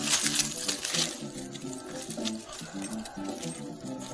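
Plucked-guitar background music, over a dense crackling rustle of dry brush and leaves being pulled at by hand, strongest in the first second or so and then thinning to scattered crackles.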